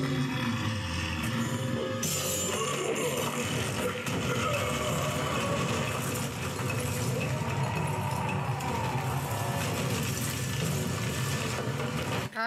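Cartoon soundtrack of a tunnel cave-in: a continuous rumble and rattle of falling rock under dramatic background music.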